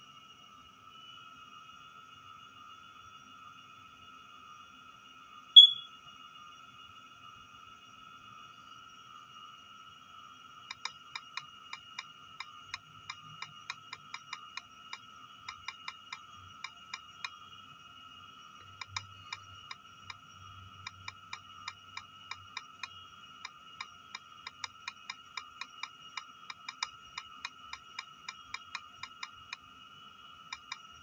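Key-press clicks from a tablet's on-screen keyboard as text is typed, irregular taps about two or three a second starting about a third of the way in. A single short, bright blip sounds about six seconds in, the loudest thing heard, and a faint steady high whine runs underneath.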